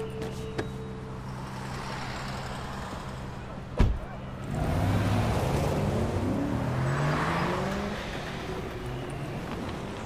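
A car door shuts with a single heavy thump about four seconds in. The car's engine then pulls away and accelerates, its pitch rising in several sweeps, over street noise.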